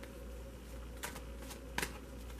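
A tarot deck being handled and shuffled: a few short card clicks, the sharpest pair near the end.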